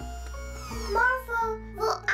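Children's cartoon background music with steady bass notes. About halfway through, a high child-like voice comes in with short sung or babbled syllables.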